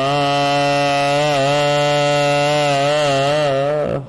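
A man's voice chanting Gurbani, holding one long drawn-out note that wavers slightly in pitch and stops just before the end.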